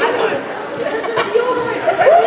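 Indistinct chatter of several overlapping voices in a large gymnasium hall; no single voice stands out.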